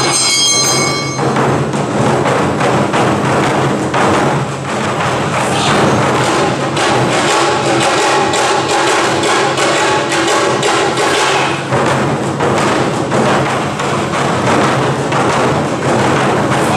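Awa odori festival music played live: taiko drums beating a steady, driving rhythm, with a bamboo flute sounding high notes for about the first second before dropping out.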